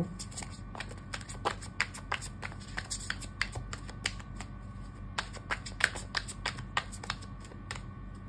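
Tarot deck being shuffled by hand: a quick, irregular patter of card clicks and flicks, a few sharper than the rest, over a steady low hum.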